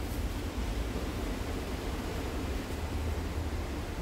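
Steady low rumbling background noise, with faint rustling of heavy black curtain fabric as it is lifted and handled.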